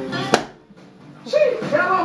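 A single sharp thud about a third of a second in: a leather boot holding a wine bottle, struck heel-first against a plastered wall, the shoe method for knocking a cork out of the neck. Music and voices in the background.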